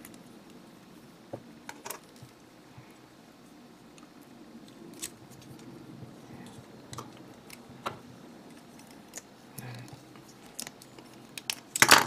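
Small hard-plastic parts of a G-Frame Freedom Gundam figure clicking as they are handled and pressed together by hand. The clicks are sparse and scattered, with a quick cluster of louder clicks near the end.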